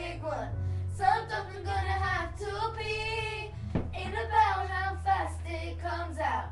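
Young voices singing a parody song together, holding and sliding notes, with a steady low hum underneath.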